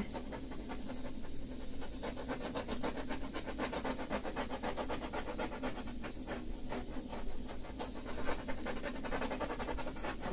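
A hand rubbing a soft wipe quickly back and forth over the wet surface of a poured acrylic painting, a fast run of dry swishing strokes, over a steady low hum. The rubbing is wiping back the top paint layer to bring up the cells beneath.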